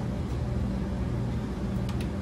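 Steady low electrical or machine hum with a faint hiss, the constant room background of a laboratory.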